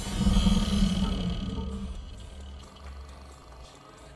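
Logo-intro music sting: a loud, deep cinematic hit in the first second that then slowly fades away.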